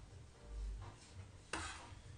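Chef's knife chopping fresh parsley on a wooden cutting board: a soft low knock about half a second in, then one sharper stroke of the blade against the board about a second and a half in.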